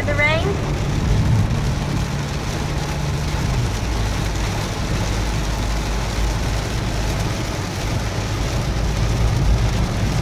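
Heavy rain falling on a Toyota Yaris's roof and windshield, heard from inside the cabin as a steady hiss, with tyre noise on the flooded road and the engine running low underneath.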